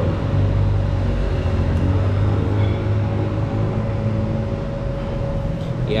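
Steady low mechanical rumble with a constant hum tone above it.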